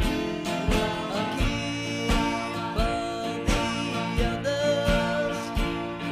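A small band playing a slow 1950s rock-and-roll ballad: acoustic guitars strum a chord about every 0.7 seconds under a male voice holding long, wavering notes.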